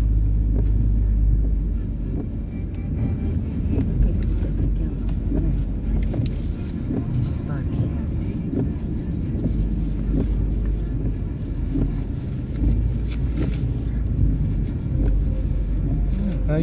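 A car's engine and tyres rumbling low and steady, heard from inside the cabin as it drives slowly through a turn on a wet street.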